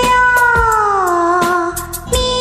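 A woman singing one long held note that slides slowly down in pitch and breaks off shortly before the end, over a karaoke backing track with a steady drum beat.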